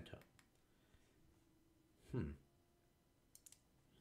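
Near silence: room tone, with a few faint clicks in quick succession about three and a half seconds in.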